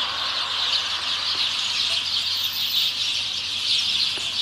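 A large flock of sparrows chirping all at once, many overlapping high chirps blending into a continuous, dense chatter.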